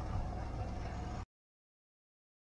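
Steady low outdoor background rumble that cuts off abruptly a little over a second in, followed by silence.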